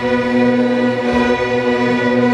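A middle school string orchestra of violins, violas and cellos playing long held bowed chords.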